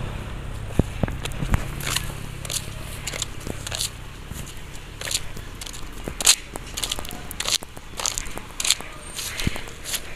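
Footsteps and rustling through garden plants and dry leaves: irregular sharp crackles and snaps.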